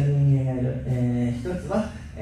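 Speech: a man's voice holding one long vowel at a steady pitch for over a second, a drawn-out hesitation sound, followed by a few broken syllables.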